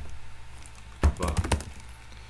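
Typing on a computer keyboard: a quick run of about six keystrokes about a second in.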